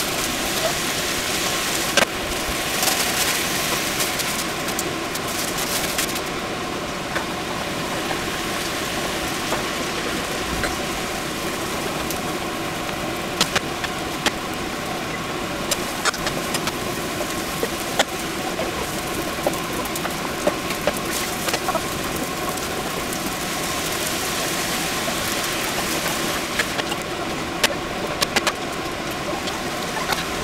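Yakisoba noodles and vegetables frying in two pans, with a steady hum throughout and scattered sharp clicks of chopsticks and a spatula against the pans.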